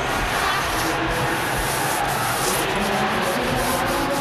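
Arena audience applauding, a steady dense wash of clapping.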